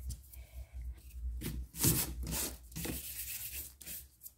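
A run of quick rubbing strokes of filing dust being brushed and wiped off an acrylic nail and the work mat, starting about a second and a half in.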